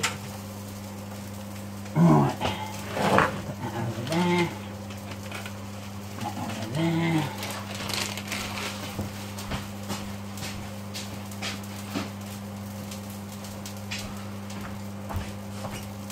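A steady low electrical hum, with a few short voice-like sounds in the first half and scattered light clicks and knocks in the second.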